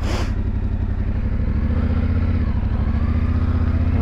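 Yamaha Ténéré 700's parallel-twin engine running steadily at low revs, its pitch rising slightly about a second and a half in.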